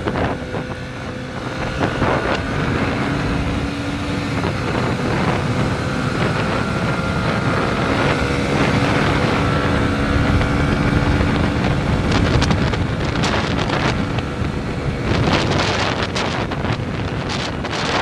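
Single-cylinder 150cc Yamaha motorcycle engine running while riding at an easy cruising pace, its pitch rising and falling with the throttle. Wind buffets the helmet-camera microphone throughout.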